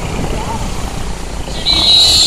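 Busy street: vehicle engines rumble under a crowd's voices. About one and a half seconds in, a loud, steady high-pitched tone starts.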